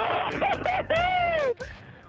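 A man's voice singing and shouting words in long, gliding syllables, thin and cut off at the top as if heard over a two-way radio. It stops about a second and a half in.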